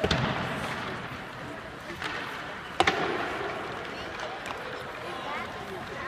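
Sharp cracks of hockey play on ice: a stick striking the puck at the start, with a low echo after it, and a louder, sharper crack of the puck hitting something hard nearly three seconds in, over children's voices in the rink.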